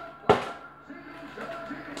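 A plastic water bottle knocks once on the countertop about a third of a second in, the landing of a flip that fails to stay upright. Quiet background music plays underneath.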